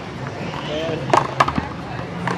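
One-wall paddleball rally: three sharp cracks in quick succession, a little past a second in, as the rubber ball is struck by the paddles and rebounds off the concrete wall.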